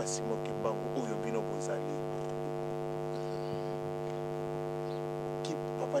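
Steady electrical hum, a buzz made of many evenly spaced tones, with faint low speech in the first second or two.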